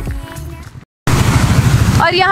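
Background music fading out, a short cut to silence about a second in, then the loud, steady rush of a fast white-water mountain river.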